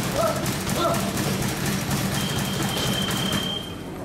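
Gloved punches landing on heavy punching bags in a busy boxing gym, a quick irregular run of thuds over a steady low hum of the room.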